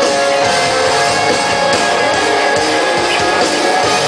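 A live rock band playing a song loudly: distorted electric guitars strumming over bass and drum kit.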